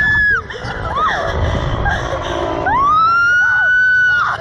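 Riders screaming on a slingshot thrill ride: one long high scream ends just after the start, shorter whooping cries follow, and a second long scream rises about three seconds in and holds. Wind rumbles on the microphone throughout.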